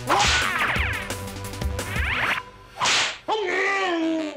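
Cartoon swish sound effects of wooden bo staffs being swung through the air, three quick whooshes, followed near the end by a falling, bending pitched sound.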